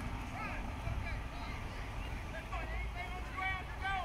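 Distant voices of players and spectators shouting and calling out across a ball field, with higher yells in the second half. Wind rumbles on the microphone underneath.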